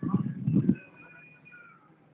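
A Patterdale terrier whining: a thin, high, drawn-out whine that falls slightly and fades, after a short burst of voice in the first second.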